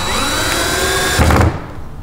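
Cordless drill/driver running as it drives a screw through a metal hinge into the wooden coop, its motor pitch dipping and bending under load. It gets heavier just before it stops about one and a half seconds in.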